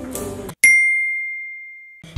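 Background music cuts off about half a second in, then a single bright bell ding strikes and rings out, fading steadily over about a second and a half: a sound effect added at a scene cut.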